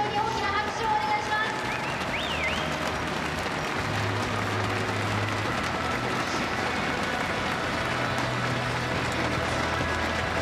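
Swimming-arena crowd cheering and applauding a race win, a steady wash of noise.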